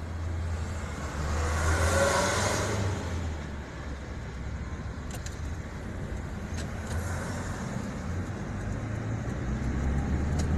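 Steady engine and road rumble heard inside a moving car's cabin, with a louder rushing swell about one to three seconds in and a few faint clicks later on.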